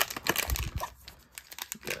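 Foil wrapper of a trading-card pack crinkling and tearing as it is pulled open by hand. It is loudest in the first half second, with a brief low thump about half a second in, then fainter crackles.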